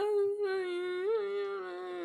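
A woman's voice humming one long held note, with a small rise and fall in pitch about a second in.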